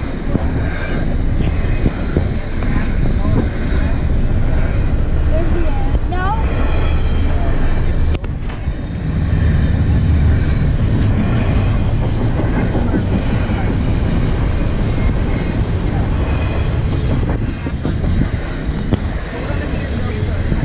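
Double-stack intermodal container cars of a long freight train rolling past: a steady, loud rumble of steel wheels on rail, with a few brief squeaky glides from the wheels and cars.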